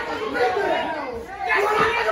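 Overlapping voices of a small crowd of spectators talking and calling out.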